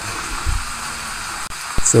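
Hands pressing and patting a loose layer of sphagnum moss and perlite flat in a tray planter, with a soft low thump about half a second in, over a steady hiss.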